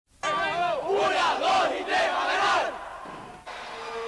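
A crowd of many voices shouting and cheering together at a basketball game, loud for about two and a half seconds before dying down, with an abrupt cut shortly before the end.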